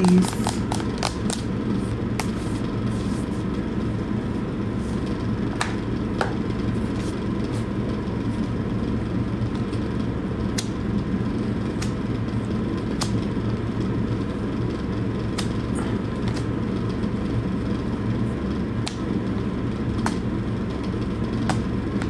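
A steady low hum and rumble, with a few faint clicks scattered through it.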